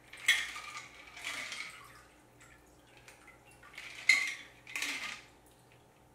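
Ice clinking and rattling inside a metal cocktail shaker as a gimlet is strained out into martini glasses. It comes in two bursts: a sharp clink just after the start and another about four seconds in, each followed by a short rattle.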